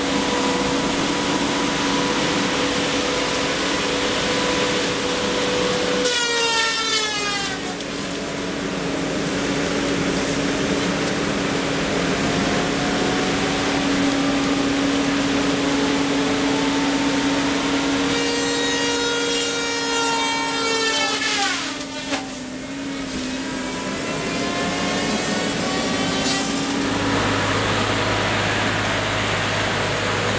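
Feller buncher's disc-saw head and diesel engine running steadily. Twice, about six seconds in and again about eighteen to twenty-two seconds in, the saw's whine drops sharply in pitch as the spinning blade is loaded cutting through a tree, then slowly climbs back up.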